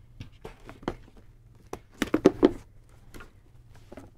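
Handling noise on a table: a scatter of light knocks, taps and rustles as fabric lunch bags and a small plastic water bottle are moved, with a few louder knocks about two seconds in.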